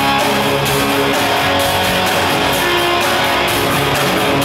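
Live rock band playing a smooth, psychedelic instrumental: electric lead guitar over bass and drums, with a steady beat.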